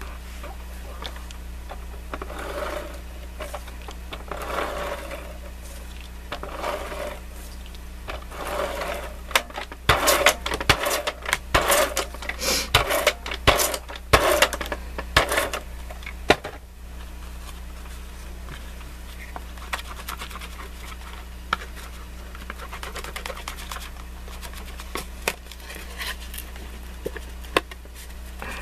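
Adhesive tape runner drawn repeatedly across cardboard, a dense run of clicks and rasps in the middle, after soft rustles of the cardboard being handled. A steady low hum lies underneath throughout.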